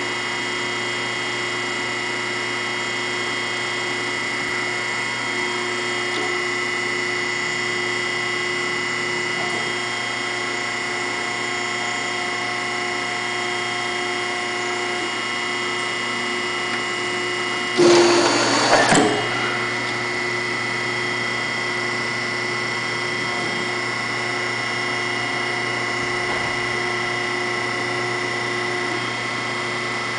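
Finn-Power P60 hydraulic hose crimper's 3-phase electric motor and hydraulic pump running steadily, a hum with a fixed whine, through its crimp cycle. About 18 s in there is a loud, noisy burst lasting about a second.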